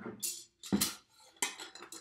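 A glass mason jar and a thermometer clinking together a few times as the thermometer goes into the jar, then a louder knock near the end as the jar is set down upside down on a wooden table.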